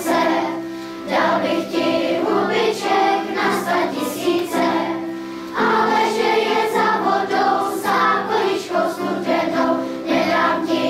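Large children's choir singing, phrase after phrase of held notes with brief breaks between phrases about one and five seconds in.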